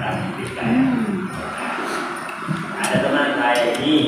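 Indistinct voices at a meal table. About a second in comes a short vocal sound that rises and falls in pitch. Near the end there are a few light clinks of metal spoons on plates.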